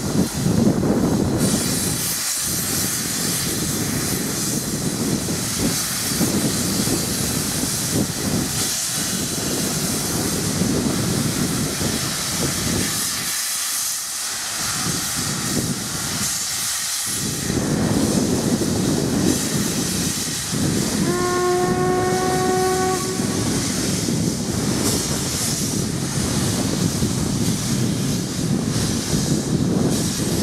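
LMS Royal Scot class steam locomotive moving off with its cylinder drain cocks open, giving a loud, continuous hiss of steam with a few brief lulls. About two-thirds of the way in, its whistle sounds once for about two seconds, rising slightly in pitch.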